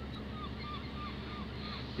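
A faint run of about five short chirping bird calls, evenly spaced, over a steady low hum.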